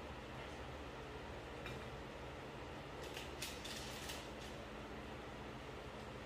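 Faint steady room hum, with a quick run of light clicks and scrapes about three seconds in from a spoon knocking against a glass mixing bowl while scooping cookie dough.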